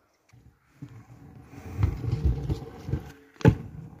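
Stunt scooter wheels rolling over a concrete path, a low rumble that swells and fades, then one sharp clack about three and a half seconds in as the scooter lands a drop.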